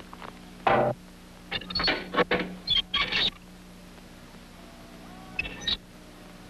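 Cartoon soundtrack sound effects: a string of short, sudden sounds, one under a second in, a quick cluster between about one and a half and three and a half seconds, and two more near the end, over a faint steady hum.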